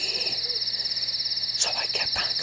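Crickets chirring in a steady, high, fast-pulsing trill, a night-time countryside ambience.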